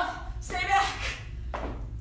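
A woman's brief vocal sounds while doing squat exercises: a short voiced sound about half a second in and a short breathy sound near the end, over a steady low hum.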